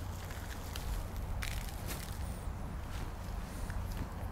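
Gloved hands digging and sifting through loose potting soil on a plastic tarp, soft rustling and crunching with a few sharp ticks, over a steady low rumble.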